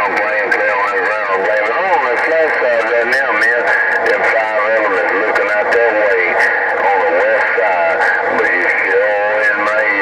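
Radio chatter from a President HR2510 radio's speaker, tuned to 27.085 MHz: voices wavering in pitch with no clear words, over crackle, without a break.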